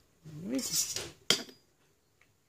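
A steel ruler sliding and lifting off the paper with a short scraping rasp, while the person gives a brief rising hum. About a second and a half in comes a single sharp metallic clink as the ruler knocks against something.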